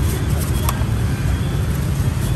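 Steady low rumble of street traffic, with one brief click about a third of the way in.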